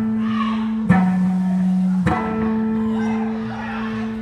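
Live gospel band playing, with electric guitars and drums: a held chord broken by two sharp accented hits a little over a second apart.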